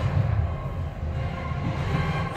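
Film soundtrack of an explosion sequence, played through home-theatre speakers and picked up in the room: a deep, continuous rumble.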